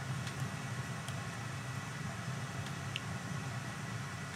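A steady low hum of room noise, with a few faint light clicks from fingers working the metal brake noodle and cable at a V-brake.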